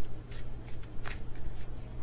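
A tarot deck being shuffled by hand: a handful of short card rustles and flicks at irregular moments, over a low steady hum.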